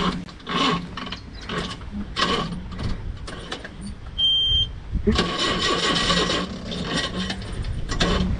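A diesel jeep with an empty tank being push-started, its engine turning over as it rolls, with a louder, busier stretch about five seconds in.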